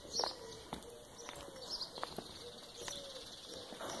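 Faint bird calls: a few soft, low cooing calls with light chirps above them, and a handful of light taps of footsteps on cobblestones.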